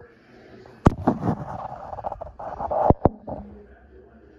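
Handling noise: cloth rustling and rubbing against the microphone, with three sharp knocks, the loudest about a second in and two close together near the end.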